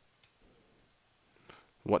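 Faint computer keyboard typing, a few scattered keystroke clicks. A voice begins speaking near the end.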